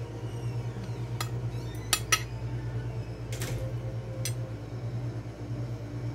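A metal spoon clinking against a ceramic plate a few times as avocado is scooped out and laid on the plate. The two sharpest clinks come close together about two seconds in. A steady low hum runs underneath.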